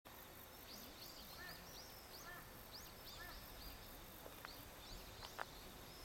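Faint chirping of small birds: many short, quick rising-and-falling calls over a quiet outdoor background hiss, with one sharp click about five and a half seconds in.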